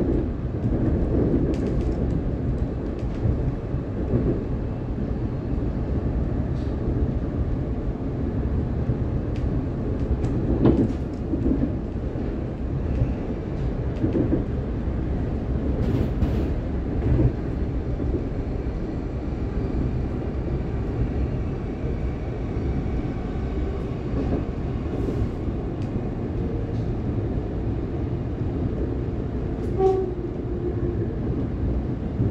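Inside a moving Siemens Nexas electric train: the steady low rumble of the carriage running along the track, with a few sharp clicks and knocks scattered through it.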